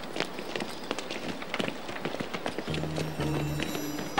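Quick, irregular footsteps of children running on hard ground. Low, sustained background-music notes come in about two-thirds of the way through.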